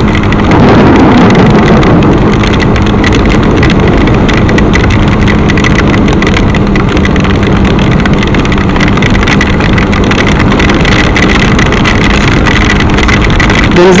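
Motorcycle cruising steadily on a rain-soaked road: a steady engine hum under a loud, even rush of wind, rain and wet-tyre hiss.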